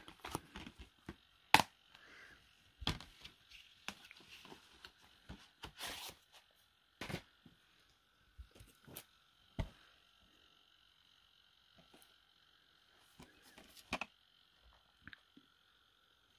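Plastic Blu-ray cases being handled: scattered clicks and knocks, the sharpest about one and a half seconds in.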